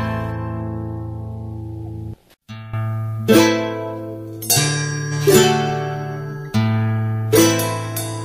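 Andean altiplano folk music: a held chord fades out and breaks off about two seconds in. After a brief silence a new piece begins about a second later with plucked strings, notes struck one after another and left to ring over a sustained low note.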